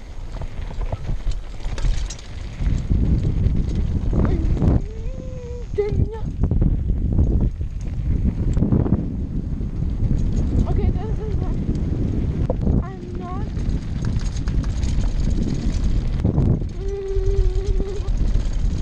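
Mountain bike riding fast down a dirt trail, heard from a helmet camera: wind buffeting the microphone with a heavy rumble, and the tyres and bike rattling and knocking over the rough, rocky ground.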